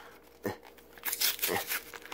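Cardboard-and-plastic blister pack being torn and crinkled by hand as it is pried open, with a stretch of quick scratchy tearing in the second half.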